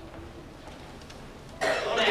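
A man's voice pauses, then a single sharp cough breaks in suddenly about one and a half seconds in.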